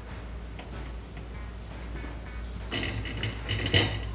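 Stainless-steel hand-crank honey extractor being loaded with a honey frame and its crank worked: after a low steady background, a few short metallic rattling clanks come in the last second or so.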